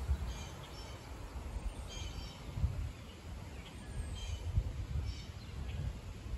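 Birds calling: short, high chirping calls repeated every second or two, over a steady low rumble.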